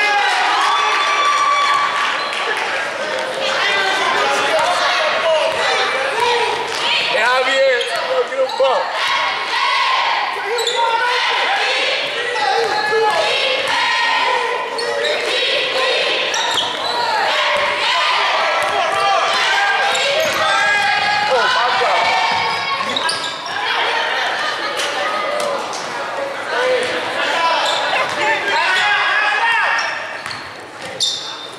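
Basketball game in a gymnasium: a basketball bouncing on the hardwood court amid continual shouting voices of players and spectators, echoing in the large hall.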